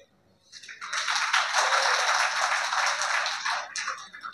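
Audience clapping, starting about half a second in and dying away near the end, about three seconds of applause.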